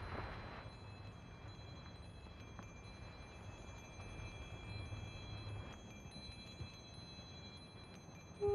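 Faint wind chimes tinkling, with thin high metallic tones starting and stopping over a low rumble that drops away about six seconds in.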